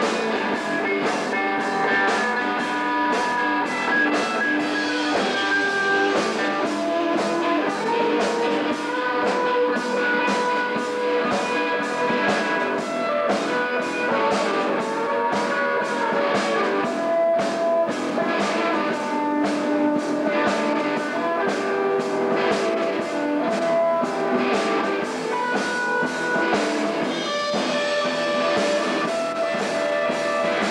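Live instrumental rock jam: electric guitars, one playing sustained lead lines, over a steady drum-kit beat. The sound is thin, with little bass.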